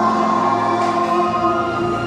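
A group of young children singing together over music, holding long steady notes.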